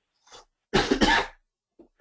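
A person coughing briefly, beginning a little under a second in, after a short faint breath.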